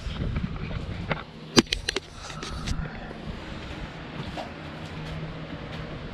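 Camera handling noise as the camera is carried and set down: a low rubbing rumble, then a few sharp knocks between about one and two seconds in. After that a steady low hum carries on in the background.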